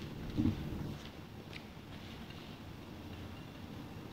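Faint footsteps and handling noise from a hand-held camera being carried through a room, with one short low sound about half a second in.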